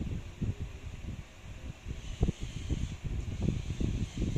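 Wind buffeting the microphone in irregular low rumbles, with one short knock a little over two seconds in.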